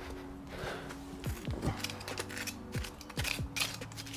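Soft background music with steady held notes, over a run of small clicks and scrapes as a thin metal rod is worked into damp soil.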